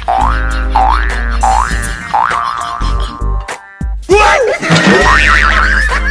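Comic background music with cartoon sound effects laid over it: four quick rising boing-like glides in the first two seconds, then a wavering, bending effect about four seconds in.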